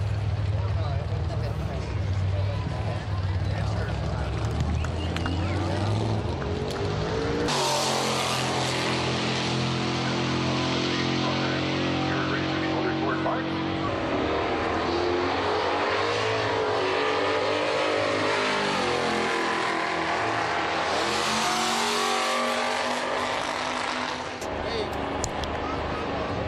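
Drag racing engines at a drag strip: a low steady rumble, then about seven seconds in a much louder run at full throttle sets in suddenly and holds for several seconds before its pitch bends and it dies away near the end.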